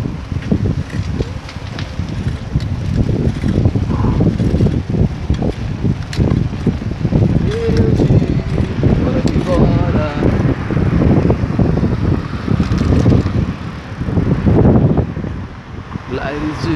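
Wind buffeting the microphone of a camera carried on a moving bicycle: a loud, gusty low rumble that rises and falls throughout.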